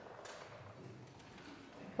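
A quiet pause: faint room tone in a church, with no clear sound event.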